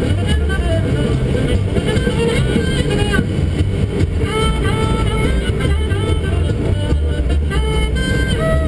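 Jazz playing on a car radio inside a moving car, over a steady low rumble of road and engine noise.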